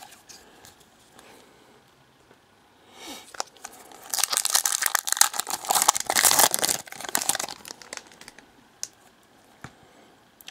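A 2013 Panini Prizm football card pack's wrapper being torn open and crinkled by hand. It is a dense crackling that starts about three seconds in and lasts about four seconds.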